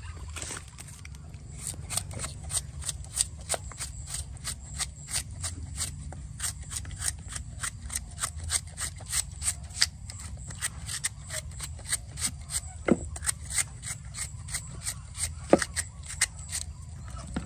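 A kitchen knife slicing a raw bamboo shoot held in the hand into thin strips, a short crisp cut about three times a second.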